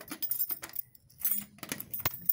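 Keys jangling and clinking against a metal post office box as it is unlocked and opened, a series of short clicks.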